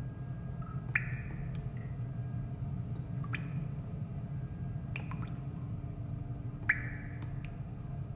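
Water dripping slowly, a single drop every one and a half to two seconds, each a short bright plink, over a low steady hum.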